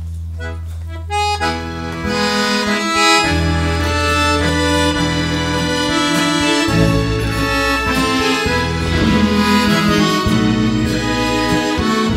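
Chromatic button accordion playing the instrumental introduction of a gospel song. A low note is held at first, and a melody with chords comes in about a second in, over sustained bass notes.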